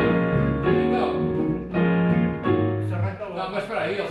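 Small jazz combo of electric bass, electric guitar and keyboard playing chords over a walking bass line, breaking off about three seconds in.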